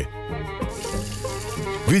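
Kitchen tap running as hands are washed under it, a steady hiss starting about half a second in, over background music.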